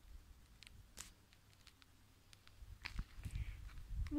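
Faint footsteps on a road, with a handful of scattered clicks over a low rumble of phone-microphone handling, getting busier near the end.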